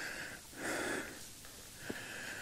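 A man breathing heavily through the microphone, winded from the climb: one long breath about half a second in and another starting near the end.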